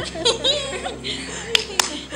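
Children laughing and squealing over background music, with two sharp smacks about a second and a half in.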